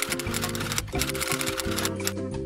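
Rapid typewriter key clatter, a sound effect for on-screen text being typed out, over background music with steady sustained tones.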